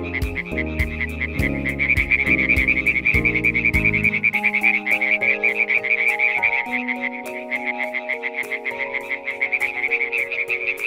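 European tree frog (Hyla arborea) calls: a fast, unbroken run of high-pitched croaks. Background music plays underneath; its deep bass chords drop out about four seconds in, leaving softer held notes.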